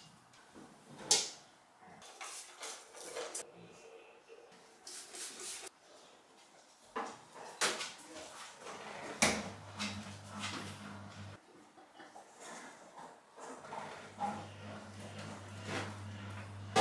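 Kitchen cupboard doors opening and closing and things being handled, a run of separate knocks and clatters with the sharpest about a second in. A low steady hum comes in twice, each time for about two seconds, in the second half.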